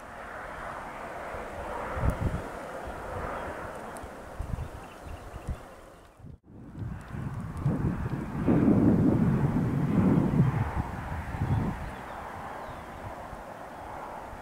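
Wind gusting on the microphone over a steady rushing outdoor noise, with the heaviest buffeting about eight to eleven seconds in.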